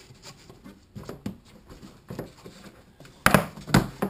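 Soft rustling and light clicks as plastic-coated mesh fabric and a PVC pipe frame are handled on a wooden workbench, then a few loud, sharp knocks about three seconds in.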